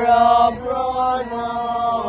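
Voices chanting in unison, slow long held notes that step from one pitch to the next.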